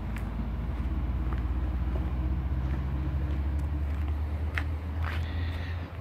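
A steady low motor hum with a few faint ticks.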